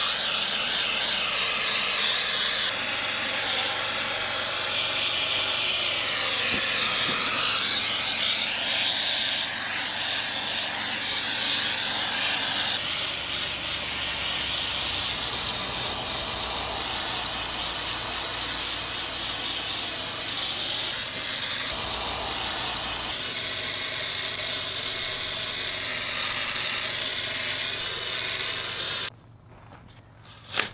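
Spray foam hissing steadily out of a hose-fed applicator gun as it fills the gap around a pipe. The hiss stops suddenly about a second before the end.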